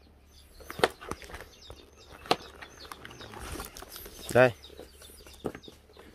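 A few sharp cuts of a kitchen knife slicing through chayote against a plastic tray, with a brief, loud pitched call about four and a half seconds in.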